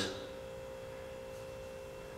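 A steady hum held at a single pitch, with fainter higher tones above it.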